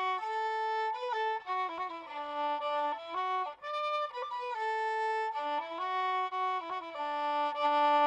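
Solo violin, bowed, playing a slow melody one note at a time, with held notes, small slides between some of them and a short break about halfway through.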